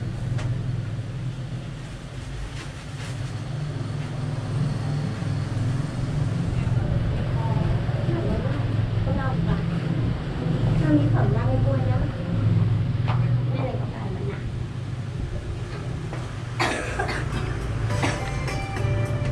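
Steady low background hum with faint murmured voices. About a second and a half before the end there is a brief sharp clatter.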